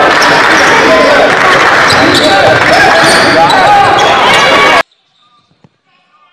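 Loud basketball court sound: a ball bouncing among many overlapping voices, cutting off suddenly near the end.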